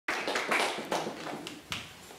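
A small group of people clapping, the applause thinning out after about a second and a half with one last clap near the end.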